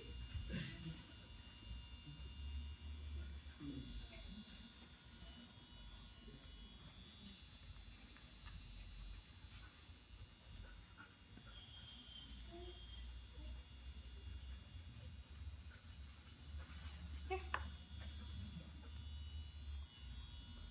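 Quiet indoor ambience: a low rumble that swells and fades, with faint scattered voices and a sharp sound about three quarters of the way through.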